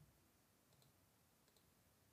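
Near silence, with a few very faint computer mouse clicks.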